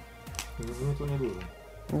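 A man's voice says a short, quiet "no" over faint background music.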